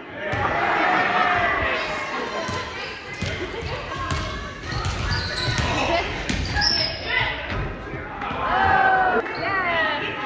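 A basketball dribbled on a wooden gym floor, with a run of bounces in the middle stretch, echoing in a large hall. Raised voices of players and onlookers call out near the start and again near the end.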